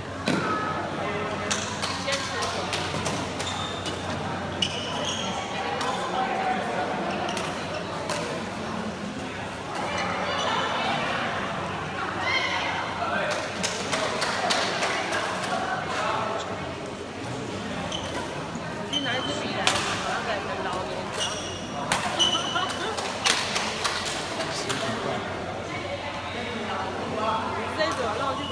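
Badminton rackets striking a shuttlecock in rallies: a stream of sharp, irregular hits, over the voices of people talking in the hall.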